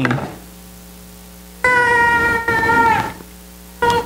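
A baby crying out: one long, steady, high cry of about a second and a half that drops slightly at the end, then a short second cry near the end.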